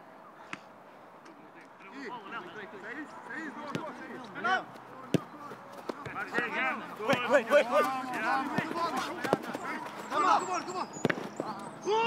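Footballs being kicked on a training pitch, single sharp thuds every few seconds, over players' shouts and calls that start about two seconds in and get busier.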